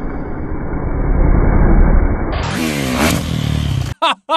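Dirt bike engine running over a low rumble. About two and a half seconds in, its pitch falls quickly as it revs down, and the sound cuts off suddenly at the end.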